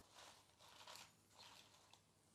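Near silence, with only a few faint rustles from a fork tossing salad leaves in a glass bowl.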